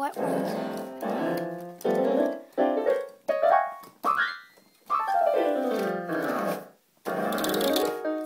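Electric keyboard being played in quick runs of notes up and down the keys, in about eight short bursts with brief pauses between them.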